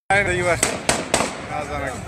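Men's voices shouting in a street crowd, the sound dropping out for an instant at the very start. Three sharp cracks come about a quarter second apart around the middle.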